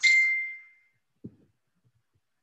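A single high ding, one steady tone that fades out over about a second, followed by a soft low knock.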